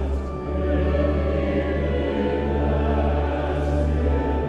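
Congregation singing a hymn, accompanied by a 19th-century American romantic pipe organ, with sustained chords over a deep pedal bass.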